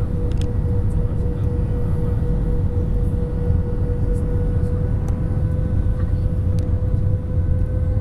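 Cabin noise inside an Airbus A320 on approach with flaps extended: a steady low rumble of engines and airflow, with a constant tone held over it.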